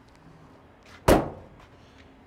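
A 1968 Ford Bronco's driver door is slammed shut once, a single sharp bang about a second in that fades quickly.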